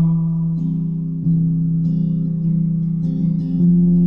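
Acoustic guitar playing alone, its chords ringing steadily, with a chord change about a second in and another near the end.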